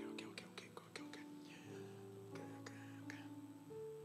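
Soft background music under a sermon: quiet held chords that shift to new notes every second or so, with faint clicks over them.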